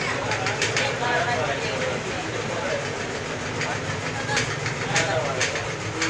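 Indistinct voices over steady background noise, with a few short sharp clicks.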